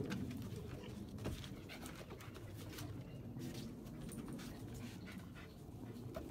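Dogs moving about and panting on a wooden deck, with scattered clicks of paws and claws on the boards.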